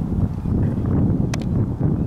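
Wind buffeting the microphone: a loud, uneven low rumble, with a couple of faint clicks about a second and a half in.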